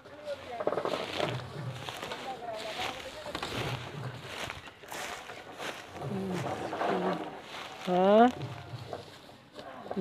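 Men's voices talking and calling out, with one rising shout about eight seconds in.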